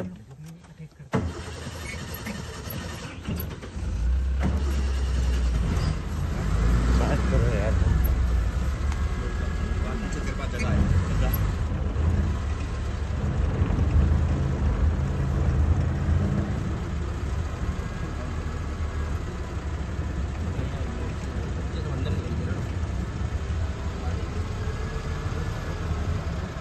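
Safari vehicle engine starting about a second in and then running, with a steady hum that grows louder a few seconds later as the vehicle moves off along the dirt track.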